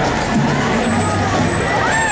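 A fire engine's engine running close by, under crowd voices and the low, repeated beats of marching bass drums.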